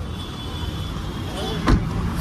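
A car door slams shut once, near the end, over the steady low rumble of the idling cab and street traffic.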